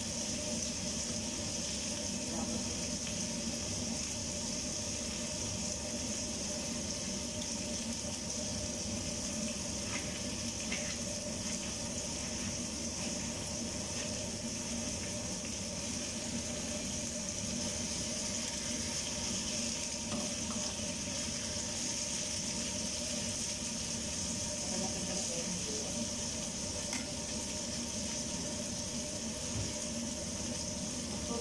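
Salmon and vegetables frying in a pan, a steady hiss, with a couple of faint knife taps on a cutting board about ten seconds in.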